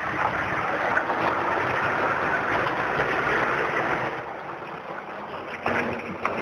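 A fire engine's motor running close by, heard as a steady rushing noise that eases off about four seconds in.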